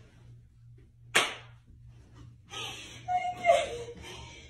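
A single sharp smack about a second in, like a hand slapping the floor or table while the chase goes on. Later, a voice makes wordless vocal sounds that fall in pitch.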